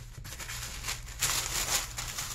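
Purple tissue paper rustling and crinkling as hands fold it around a print in a clear plastic sleeve, loudest for about a second from just over a second in, over a steady low hum.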